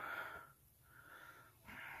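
Faint breathy puffs of a man stifling a laugh, two short ones in the second half.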